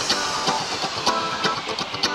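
Intro music: plucked guitar over a steady beat, with a high falling sweep in the first half.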